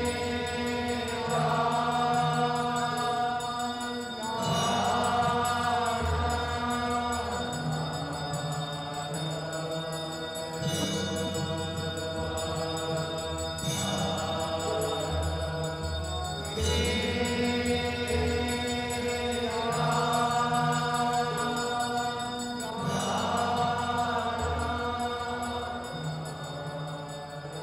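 A group of voices chanting a Hindu devotional hymn together in phrases a few seconds long, over low sustained accompanying notes.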